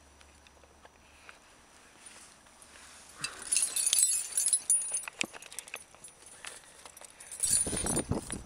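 Climbing gear clinking and rustling as it is handled among slings and carabiners: scattered metallic clicks with a rustling clatter, busiest from about three to five seconds in, after a quiet start.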